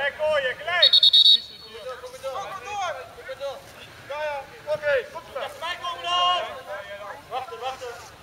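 A referee's whistle blown once, a short shrill blast about a second in and the loudest sound. Around it, players and spectators shout and call out on the pitch.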